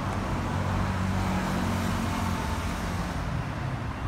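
Road traffic, with a motor vehicle's engine running steadily through most of it and fading away near the end.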